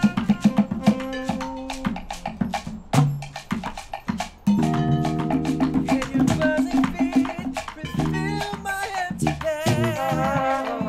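A band playing a Latin-style groove: rapid hand-drum and shaker strikes over a bass line, with a fuller held chord from the horns coming in about halfway.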